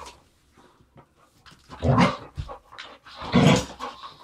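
Two dogs, a German Shepherd and a smaller shaggy dog, play-fighting, with two loud growling bursts, one about halfway through and one near the end.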